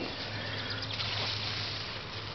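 Steady outdoor background: an even high hiss with a low steady hum underneath, and no distinct event.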